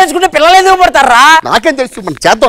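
A man talking loudly, with one long drawn-out exclamation that rises and falls in pitch in the middle.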